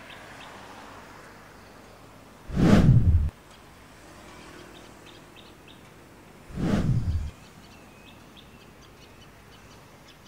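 Two short whoosh sound effects about four seconds apart, each lasting under a second and starting and stopping abruptly. Between them is a quiet outdoor background with faint bird chirps.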